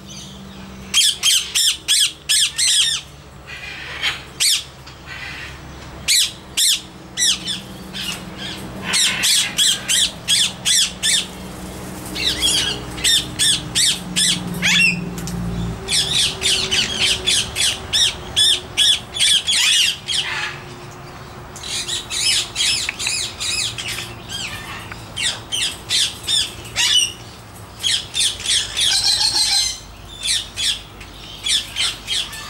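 Parrots squawking: bouts of rapid, repeated shrill calls, several a second, broken by short pauses.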